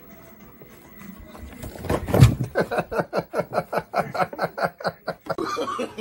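A loud sudden sound a little after two seconds in, followed by a person's rapid, rhythmic laughter, about five bursts a second, that stops shortly before the end.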